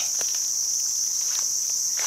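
Steady, high-pitched drone of forest insects, one unbroken buzzing tone.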